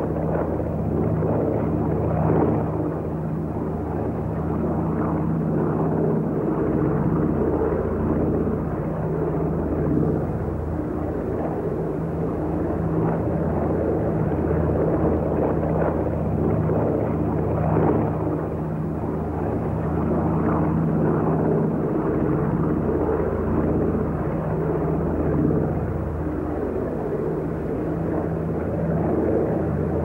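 Twin Pratt & Whitney R-1830 radial piston engines of a Douglas C-47 Dakota in cruising flight, a steady propeller drone with a low, even hum and small swells in level.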